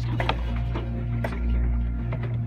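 Scattered clicks and knocks, irregularly spaced, over a steady low hum, heard from inside a marching bass drum while it is handled and strapped down with a ratchet strap.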